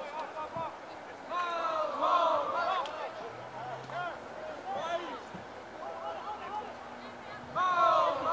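People shouting and calling out during a rugby league match as play goes on. The loudest bursts of shouting come about a second and a half in and again near the end.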